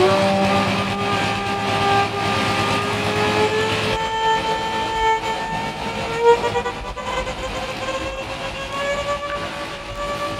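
Violin bowing long held notes that slide slowly upward, layered over a noise track drone. The hiss underneath thins out about four seconds in, leaving the sustained violin tones.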